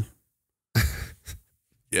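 A man's laugh trailing off, then a short breathy exhale like a sigh or soft chuckle about a second in.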